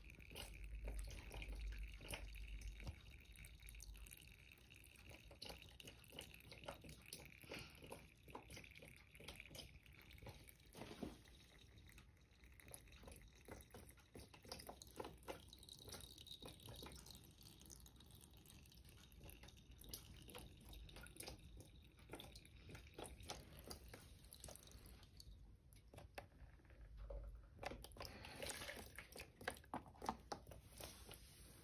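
Faint dripping and trickling of water running down a sloped sand-and-clay stream-table tray, heard as many small scattered drips and ticks. A low rumble comes about a second in and again near the end.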